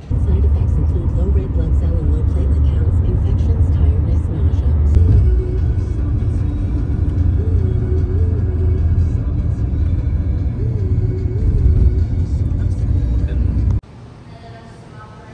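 Steady low road rumble inside a moving car on a highway, with music and a voice faintly over it; it cuts off suddenly near the end.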